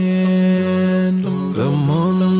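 Background vocal music: a voice chanting long held notes, with a short slide to a new note about a second and a half in.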